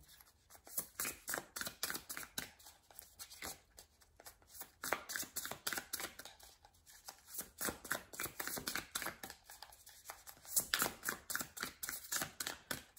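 Tarot deck being shuffled by hand: rapid runs of card clicks and slaps in several bursts, with short pauses between.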